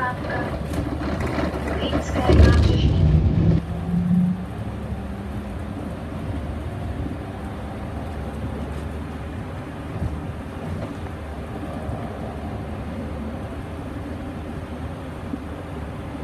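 Solaris Urbino 15 city bus under way, heard from inside near the front: a steady drone of engine and tyres. It is louder for the first four seconds or so, with voices and a brief rising engine tone, then settles to an even run.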